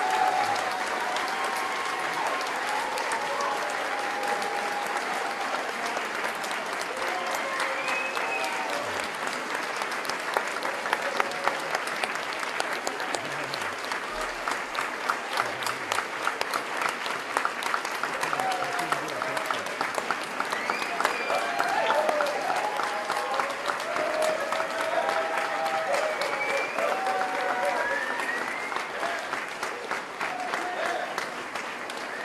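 An audience applauding steadily, with voices calling out over the clapping.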